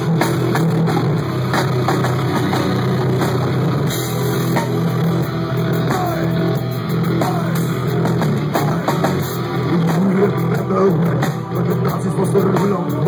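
Heavy metal band playing live and loud: electric guitar and drum kit in the instrumental lead-in before the vocals come in.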